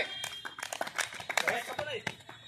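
Men's voices talking, mixed with a quick, irregular run of crackling clicks.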